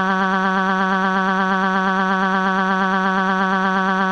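A steady, buzzy electronic tone held at one pitch with a fast, even wobble, with no break in level.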